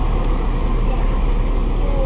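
Steady low rumble of a car engine idling, heard from inside the cabin.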